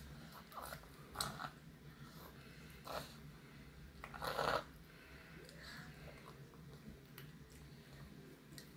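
A toddler eating: a few short, separate mouth and chewing sounds, the loudest about four seconds in.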